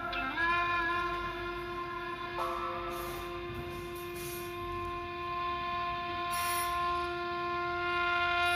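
Background music: a wind instrument slides up into one long held note and sustains it steadily, moving on to other notes just after the end.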